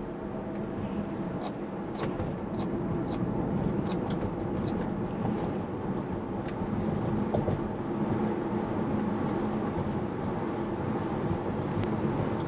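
Tyre and road noise heard inside a Tesla electric car's cabin, steady and rising a little as the car speeds up on the highway. A scatter of faint clicks, mostly in the first half, comes from the steering-wheel scroll wheel being rolled to raise the set speed.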